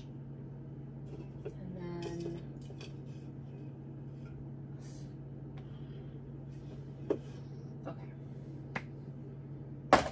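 Drink bottles and cans being set down and shuffled on a wooden pantry shelf: a few light, sharp clicks in the second half, over a steady low hum, with a brief murmured word about two seconds in.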